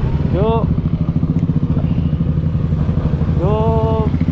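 Suzuki Gixxer 155's single-cylinder engine running at a steady cruise under the rider, a dense, even low pulsing with no rise or fall in revs. A short spoken word cuts in twice, about half a second in and near the end.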